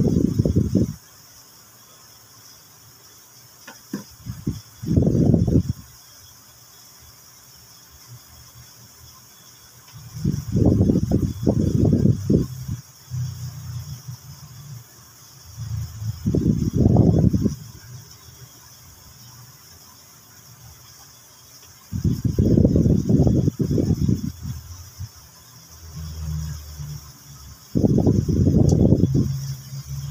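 A kitchen knife cutting and scraping small fish against a plastic cutting board in short bouts of one to two seconds, with quiet gaps between them, as the fish are headed and their backbones removed.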